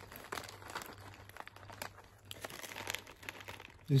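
Plastic snack packets crinkling as hands dig into them for fries-shaped snacks, a run of irregular short crackles.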